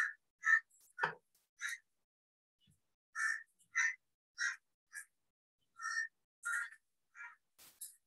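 About a dozen short, sharp computer-mouse clicks at an irregular pace, with a pause of about a second and a half after the first four.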